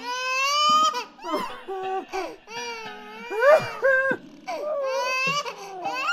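A high-pitched voice crying or wailing in a run of cries, each sliding up and down in pitch, with short breaks between them.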